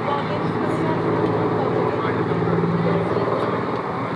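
Spectators' voices and shouts around a running track during a hurdles race, over a steady low hum.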